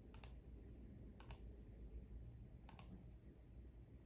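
Three faint computer clicks about a second and a half apart, each a quick double like a button pressed and released, over near-silent room tone.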